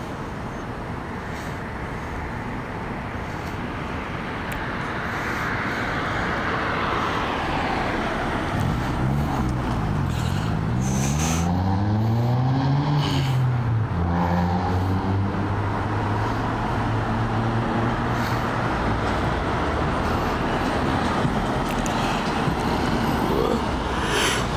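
Street traffic passing: a car goes by, then a vehicle's engine hum rises and falls in pitch about halfway through and settles into a steady drone.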